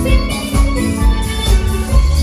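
Upbeat dance music from a live band, with sustained pitched notes over a steady bass-drum beat of about two hits a second.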